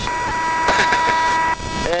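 Citabria's stall warning horn sounding a steady tone and cutting off near the end, with the wing held at full stall for a spin entry.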